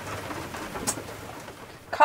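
A dove cooing softly over a low, steady background hum, with a faint click about a second in.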